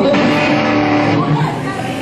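An electric guitar note held and ringing for about a second before fading, over crowd chatter in the room.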